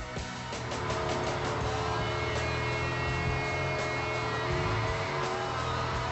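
Background music over a Jeep Wrangler JL running on the trail, with its stock engine cooling fan loud. The steady drone sets in about half a second in.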